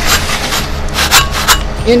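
Several short scraping, rubbing noises as a metal fence channel is pressed down into wet concrete in a post hole, the strongest about a second in and about a second and a half in, over a low rumble.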